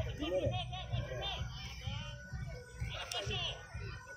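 Distant shouting and calling voices of children and adults around a youth football pitch.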